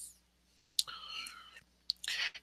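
A pause in a man's speech: a soft mouth click a little under a second in, a faint whispered murmur for about half a second, then another click just before he speaks again.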